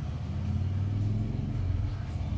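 A steady low rumbling hum, as of machinery running in the room, with no other distinct sound over it.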